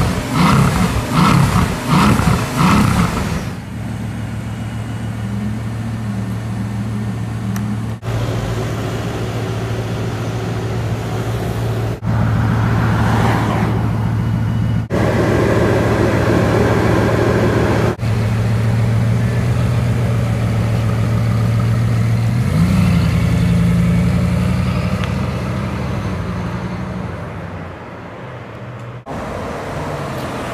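Bugatti Veyron's quad-turbocharged W16 engine: a run of short revs in the first few seconds, then running at a steady low note across several spliced clips. The note steps up in pitch about two-thirds of the way through.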